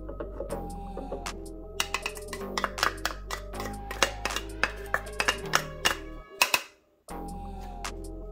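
Instrumental background music, which drops out for under a second about six seconds in.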